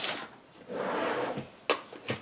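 A drawer sliding, ending in a short knock or click about a second and a half in.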